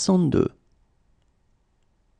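A voice reading one French number word, "soixante-deux", ending about half a second in, then near silence.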